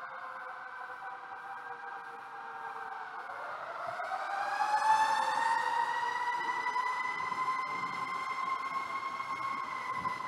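A siren wailing: its pitch slides slowly down over the first few seconds, then rises again from about three seconds in and holds high to the end. It is loudest about five seconds in.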